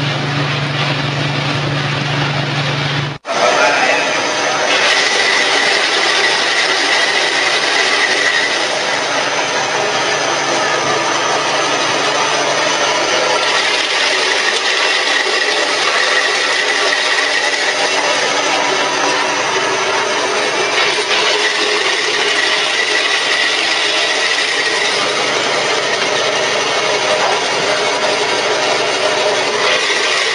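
Oil press machine running: a steady motor hum for about three seconds, then after a sudden cut a dense, noisy grinding and rubbing run with a faint high whine.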